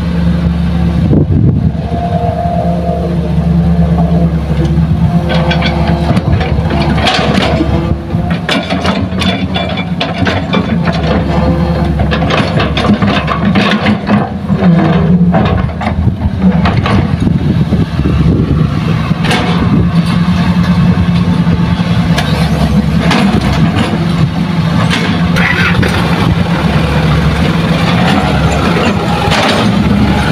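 Diesel engines of a Hitachi hydraulic excavator and a dump truck running steadily while the truck is loaded, with repeated knocks and clatters of soil and rocks dropping into the truck's steel bed.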